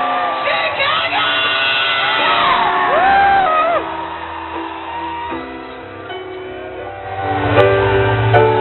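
Festival crowd whooping and cheering over sustained keyboard chords from the stage. About four seconds in the cheering falls away and the held chords go on alone, with a low rumble building near the end.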